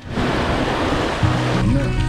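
Muddy water splashing up under a four-wheel-drive vehicle's tyres as it drives through a puddle, a loud rush that eases after about a second. Background music with steady held notes then comes in.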